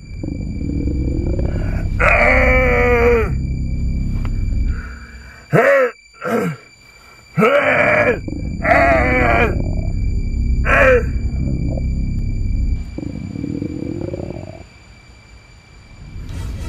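A man groaning and moaning without words, in mock stomach pain after eating a burger: a series of drawn-out groans, several bending down in pitch, over a steady low rumble that drops away about 13 seconds in.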